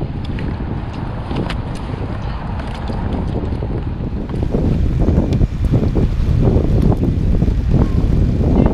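Wind buffeting the microphone of a camera mounted on a fishing kayak: a dense, steady low rumble that gets louder about halfway through, with a few faint knocks.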